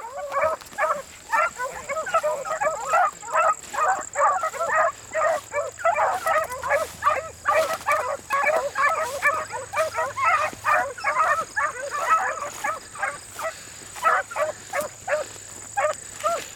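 Pack of beagles baying on a rabbit's trail: a continuous run of short, overlapping hound calls, several a second, with the dogs' voices layered over one another.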